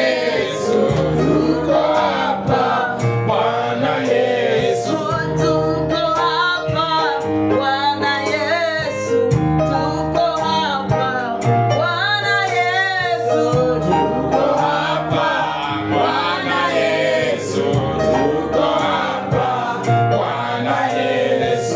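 Gospel worship song: a man sings lead with other voices, over a Yamaha PSR-S670 arranger keyboard playing held bass notes and a drum rhythm.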